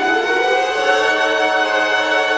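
Symphony orchestra playing late-Romantic symphonic music: a line rising in pitch through about the first second, then settling into sustained chords.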